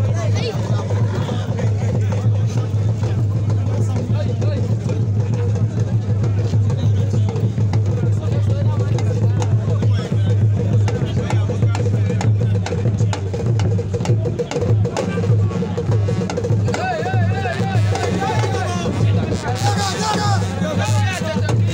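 Drumming with a steady beat over loud crowd chatter; a voice sings or calls out over it in the last few seconds.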